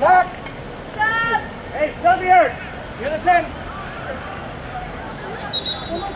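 Several short, high-pitched shouted calls on a soccer field, too far off to make out, over steady outdoor background noise.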